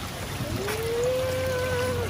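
Water running through a gem-sluice trough as a wooden mesh sieve of gem dirt is washed in it. From about half a second in, a long hum slides up in pitch and holds steady.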